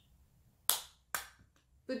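Two sharp plastic clicks about half a second apart from small makeup compacts being handled: lids snapping or cases knocking together.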